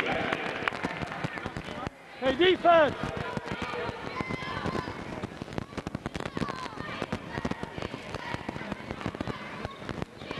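Basketball game sounds on a hardwood court: a ball bouncing and players' footfalls make a steady stream of sharp knocks, under the chatter of voices in the gym. About two seconds in comes a loud, short, gliding squeal.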